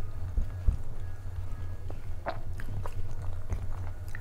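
Close-miked chewing and mouth sounds of a person eating rice and curry by hand, with soft wet clicks of fingers picking food from a steel plate, the sharpest about two seconds in. A low steady hum runs underneath.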